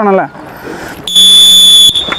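Race start signal: a loud, steady, high-pitched tone lasting just under a second that sends a large field of runners off the line.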